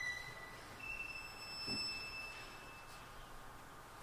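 Solo violin in a very quiet passage: after a note fades away, one faint, very high note is held for about two seconds.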